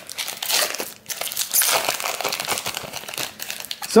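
Foil trading-card pack wrapper crinkling and crackling as it is handled, a dense run of small sharp crackles; a man's voice comes in right at the end.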